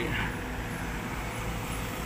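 Steady low drone of a Sumitomo amphibious long-reach excavator's diesel engine running as it dredges river mud.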